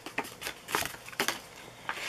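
Paper cards and plastic packaging from a diamond painting kit being handled: a series of short crinkles and taps, about eight in two seconds.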